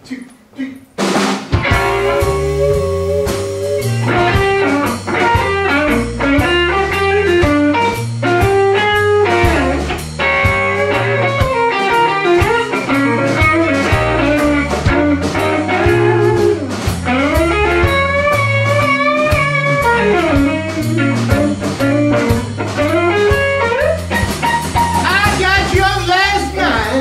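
Live electric blues band playing a song's opening: electric guitar lines over bass and drum kit, the whole band coming in together about a second in.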